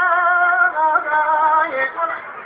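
Turkish folk wedding music: a singer holds long, ornamented notes that step down in pitch twice.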